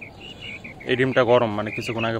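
A man's voice speaking from about a second in, the loudest sound. Behind it, faint, rapid, high chirping repeats throughout.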